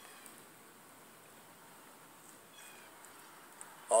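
Quiet background with one faint, brief, high-pitched animal call a little past halfway through.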